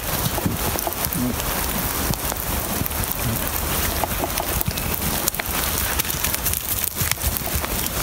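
Steady rain falling, with scattered drops pattering close to the microphone.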